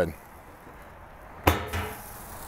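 A single sharp knock about one and a half seconds in, metal on metal, with a short ring: the steel lid of a drum smoker knocking against the drum as it is set aside.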